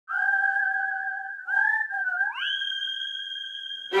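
A dog whining in long, high, wavering tones, with a brief break about a second and a half in, then sliding up to a higher held note that cuts off at the end.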